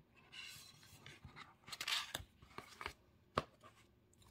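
Faint paper rustling and sliding as notepad pages and their chipboard backing are handled, with a few light taps about two to three and a half seconds in.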